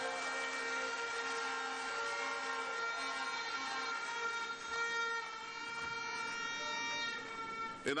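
An audience blowing many horns in long, steady notes of several pitches, with clapping underneath, in response to a campaign speech line; it gives way to the speaker's voice at the very end.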